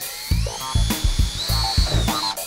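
Cordless drill running with a small pilot bit, drilling out a hole in the car's rear trim area: a whine that rises in pitch as the motor speeds up, then holds steady. Background music with a steady beat plays underneath.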